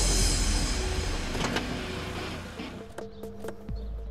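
Soundtrack music fading out as a Mazda sedan comes to a stop, then a few sharp clicks and a low thud near the end as the car's door is opened.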